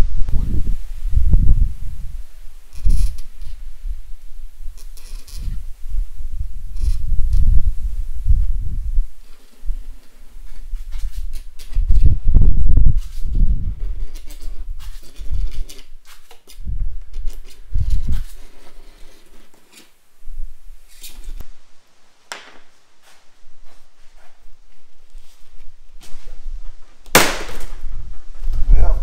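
Acrylic (plexiglass) sheet being scored by hand with a plexiglass cutter drawn along a clamped straightedge, in a series of scraping strokes. Near the end a single loud, sharp crack as the scored sheet snaps along the line.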